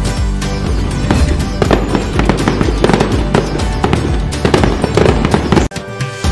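Background music overlaid with a rapid run of firecracker bangs and crackles, breaking off suddenly just before the end.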